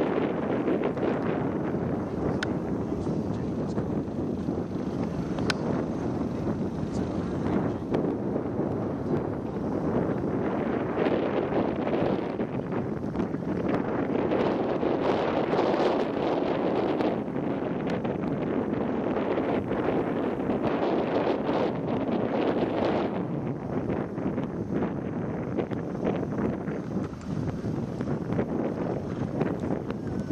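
Wind buffeting the microphone: a steady rushing noise that swells and eases, strongest in the middle of the stretch.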